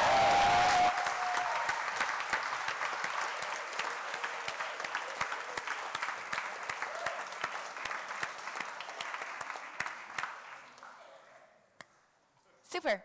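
Audience applauding, with voices calling out over the clapping for about the first second. The applause then dies away gradually, ending about a second before the end.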